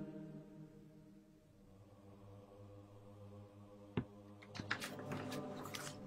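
A choir recording playing faintly: a held chord dies away and a single low note holds underneath. About four seconds in there is one sharp click, then a quick run of short hissing sounds near the end.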